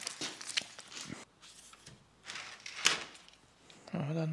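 Scattered light clicks and rustles of a plastic splinter guard strip being handled and pressed onto an aluminium guide rail, the loudest about three seconds in.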